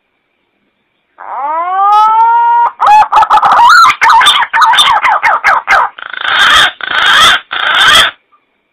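Recorded call of a punai (green pigeon) played as a hunting lure. It opens about a second in with a rising whistled note, breaks into fast warbling, and ends with three harsher, hoarser bursts.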